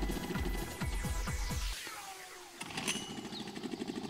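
Small outboard motor running unevenly just after starting, on choke with the throttle opened. Its low, pulsing beat falters and nearly dies a little before halfway, then picks up again into a steady run.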